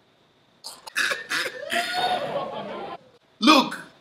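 A man laughing hard in loud, breathy bursts, starting about half a second in, followed by a short separate vocal outburst near the end.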